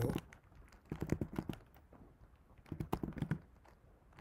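Keystrokes on a computer keyboard as a terminal command is typed, in two short runs of rapid clicks, about a second in and again near three seconds.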